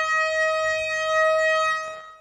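A single steady horn-like tone held for about three seconds at one pitch, with a full set of overtones, fading out near the end.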